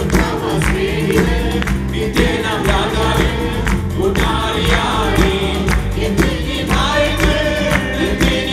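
Live worship song: several voices singing together into microphones over keyboard and guitar accompaniment, with a steady beat and strong bass.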